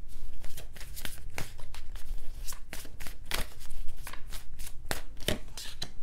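A tarot deck being shuffled and handled by hand: a quick, irregular run of soft card clicks and flicks, with a card laid onto the tabletop near the end.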